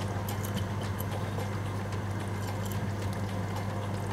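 Whole spices sizzling and crackling in hot melted ghee in a heavy pan: a soft, even frying hiss with scattered light ticks over a steady low hum.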